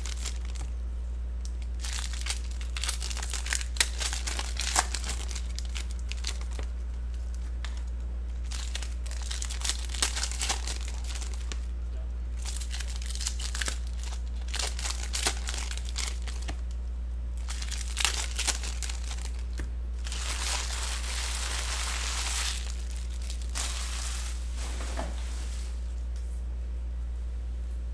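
Silver foil trading-card pack wrappers crinkling and tearing in irregular handfuls as packs of Topps Star Wars cards are ripped open and handled, with a longer run of continuous crinkling about twenty seconds in. A steady low hum runs underneath.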